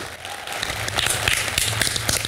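Studio audience applauding, a dense patter of many hands clapping that swells during the first second.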